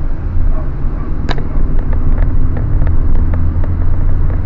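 Car engine and road noise heard from inside the moving car's cabin: a steady low rumble, with faint irregular ticks and one sharper click about a second in.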